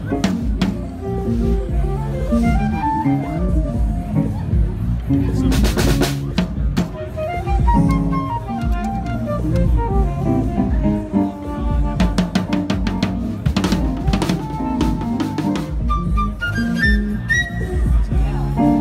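A live band playing at a sound check: a drum kit's snare and bass-drum hits under melodic guitar lines, with a quick run of rising notes near the end.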